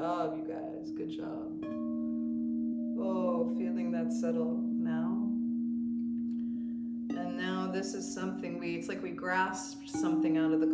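Crystal singing bowls ringing in long steady tones, with a second, lower tone sounding from about two seconds in until about seven seconds. Over them, a woman's wordless singing in long rising and falling phrases, with a pause in the voice around the middle.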